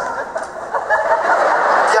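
Live audience laughing, a dense mass of many voices that swells about half a second in.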